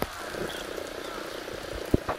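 East i-D inspection train running towards the camera in the distance: a steady, low rattling rumble of the train on the rails. A sharp click comes at the start and another near the end.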